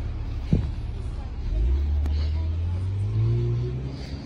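A car driving by: a low engine hum comes in about a second and a half in, rises in pitch near the end, then fades. A short thump about half a second in.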